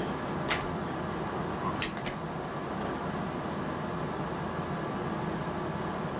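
Steady room hum with two brief, sharp clicks, the first about half a second in and the second, slightly louder, near two seconds in.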